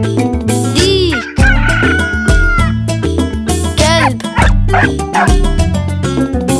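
Upbeat children's song music with a steady beat, overlaid with a rooster crowing sound effect about a second in, a call that rises and then holds one long note.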